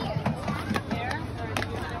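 Indistinct voices talking over a steady outdoor background murmur, with a couple of short sharp clicks.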